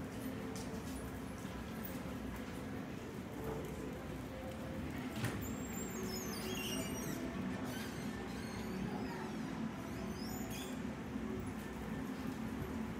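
Small birds chirping in quick, high, squeaky notes, clustered in the second half, over a steady background hum. A single sharp click a little before the middle.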